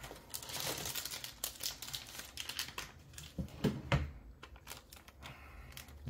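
Plastic packaging crinkling and rustling as it is handled: a dense crackle for about the first two seconds, then scattered clicks and taps.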